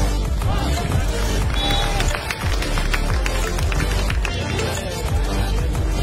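Music with a strong, steady bass line running throughout.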